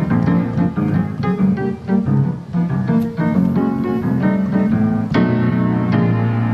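Grand piano played solo: a steady run of struck chords over sustained low bass notes.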